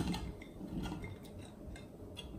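Faint, scattered light taps and clicks as pieces of jackfruit are dropped by hand into a stainless steel bowl.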